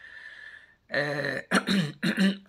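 A man clearing his throat twice, in two short, loud bursts about a second in, after a faint breathy hiss.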